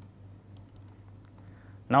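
A few faint, irregular clicks from a computer keyboard and mouse as the code editor is scrolled, over a low steady hum.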